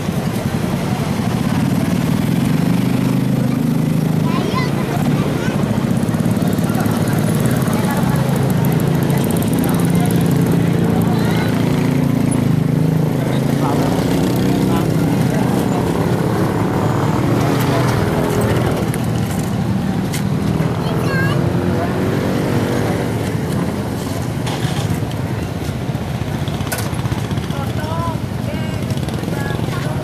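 Small motorcycle and scooter engines running as they ride slowly past at close range, one after another, loudest in the first half. People are talking throughout.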